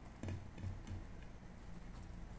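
A person eating rice by hand, close to the microphone: a few soft mouth clicks and low thumps of chewing in the first second, then quieter.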